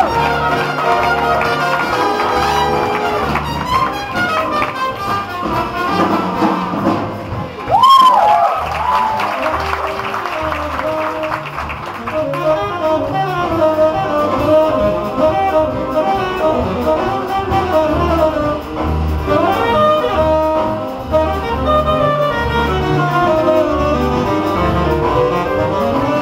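Live big-band jazz: a saxophone and brass section of trumpets and trombones over upright bass, piano and drums, with a saxophone solo in the second half. There is a sudden loud swell with a bent note about eight seconds in.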